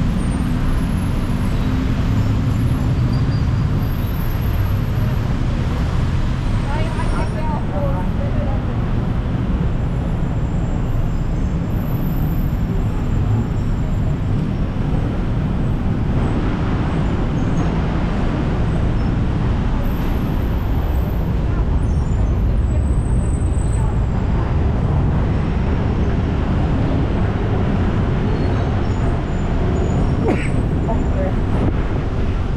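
Busy city road traffic heard from a walkway above the street: a steady low rumble of cars and motorbikes, with indistinct voices of passers-by.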